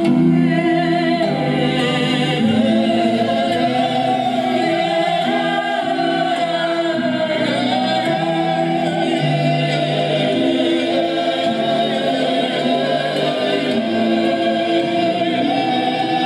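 Recorded choral music: a choir singing long, held notes in several voices, with a few gliding pitch changes partway through.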